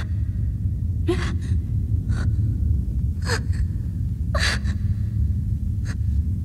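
A frightened woman gasping for breath, about one sharp gasp each second, five in all, over a low steady rumble.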